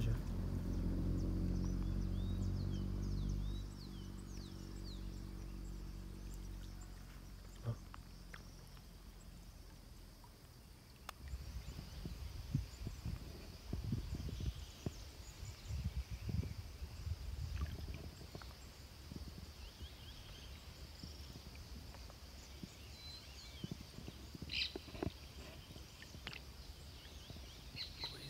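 Faint outdoor pond-side ambience with scattered high bird chirps. A low steady hum fades out over the first several seconds, and irregular low rumbles follow later.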